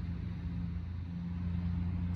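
Steady low hum of an engine running, a little louder about halfway through.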